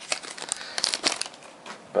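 Foil trading-card booster pack wrapper crinkling in the hands, a quick run of crackles for about the first second, then a few fainter ones.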